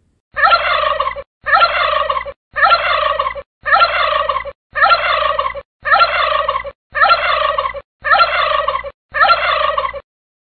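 A turkey gobbling: nine identical gobbles in an even row, each about a second long, with a short gap between them.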